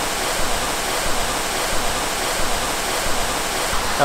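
Waterfall pouring into a pool: a steady, even rush of falling water.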